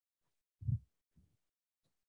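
A dull low thump about two-thirds of a second in, then a fainter one half a second later, with near silence around them.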